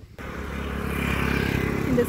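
A motor vehicle on the road, its engine and tyre noise starting suddenly just after the beginning and growing steadily louder as it approaches.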